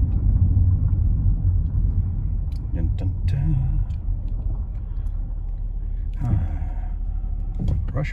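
Steady low rumble of engine and road noise heard inside a Mopar minivan's cabin while it drives at low speed.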